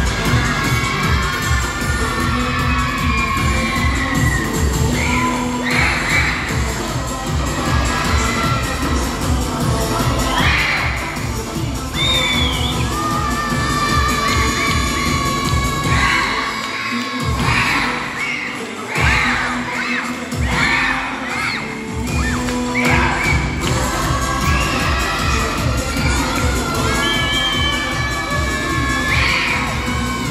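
Upbeat routine music with a steady beat playing over a sports hall's sound system, with spectators, many of them children, shouting and cheering over it throughout. The bass beat drops out for a few seconds past the middle, then comes back.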